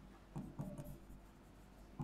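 Faint stylus taps and scraping on an interactive display board: a few short taps in the first second, then quieter.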